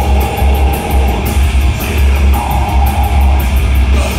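Live metal band playing loudly: distorted electric guitars and bass over drums, with rapid, evenly spaced cymbal strokes.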